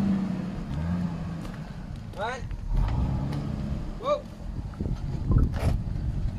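Twin-turbo car engine running at idle, with white smoke coming from the exhaust: a steady low rumble with a few brief swells in level.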